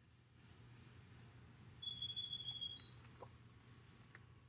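A songbird singing: three short high notes, then a quick trill of rapid repeated notes about two seconds in.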